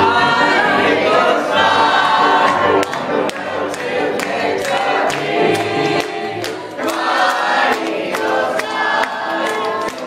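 A group of voices singing a song together, like a small amateur choir.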